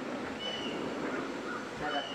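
Outdoor ambience with short, high bird chirps, one about half a second in and another at the very end, over a steady background hiss.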